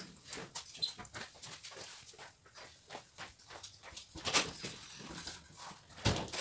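A dog panting quickly, about five breaths a second, with one louder breath or sound about four seconds in.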